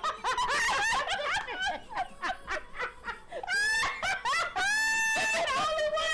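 Two people laughing hard in quick, rapid bursts, with a couple of long high-pitched held notes around the middle.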